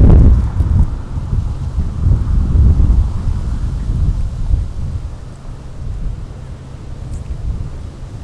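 Wind buffeting the microphone: a low, gusty rumble, loudest near the start and again about two to three seconds in, then easing.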